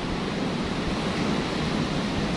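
Steady rushing noise of strong wind and ocean surf, with wind rumbling on the microphone.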